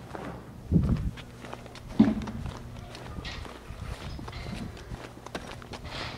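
Footsteps on pavement with scattered light clicks, and two louder low thumps: one a little under a second in, a sharper knock at about two seconds.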